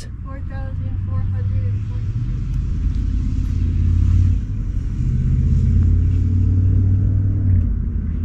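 A motor vehicle's engine running with a low, steady drone that dips briefly about halfway through.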